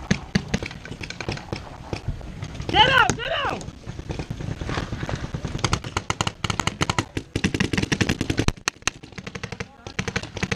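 Paintball markers firing rapidly: a quick, uneven run of sharp pops that starts about halfway in and keeps going. A short shout comes a few seconds in.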